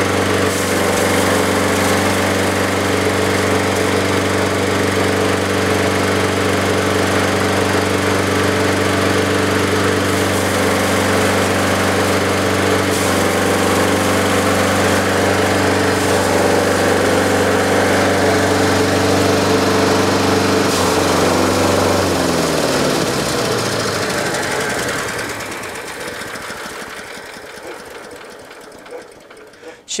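Small petrol engine of a hay chopper running steadily while hay is fed in and shredded. About two-thirds of the way through the engine is switched off: its pitch falls as it winds down and the sound fades away.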